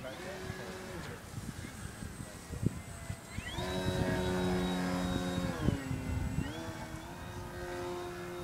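A radio-controlled model airplane's motor and propeller whining steadily as it flies close past. The whine starts a few seconds in, dips in pitch briefly about two seconds later, rises again, and then fades.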